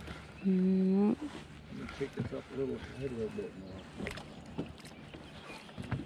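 A person's wordless voice: a loud held hum that rises in pitch at its end, then a short sing-song stretch of humming. A few faint clicks follow near the end.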